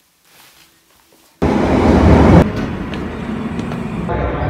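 London Underground tube train running past along the platform. The loud train noise starts suddenly about a second and a half in, is loudest for about a second, then carries on steadily a little quieter.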